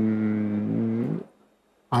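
A man's long, steady hesitation sound, one held vowel at a single pitch lasting about a second, dropping slightly as it ends; a short silence follows, then his speech resumes near the end.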